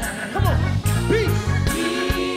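Live gospel worship music: a lead vocalist sings gliding runs over a band with a steady drum beat. Deep bass notes come in about half a second in.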